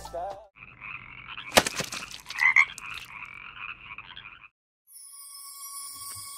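The previous song cuts off, then a non-musical sound effect in the upper-middle range runs for about four seconds, broken by two sharp clicks. After a brief gap, a thin steady high tone leads into the next track.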